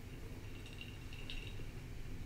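Low steady hum of room tone, with a few faint clicks about a second in.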